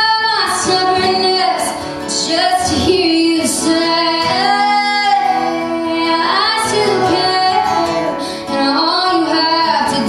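A woman singing a slow melody with long held, wavering notes, over two acoustic guitars strummed together, in a live acoustic duo performance.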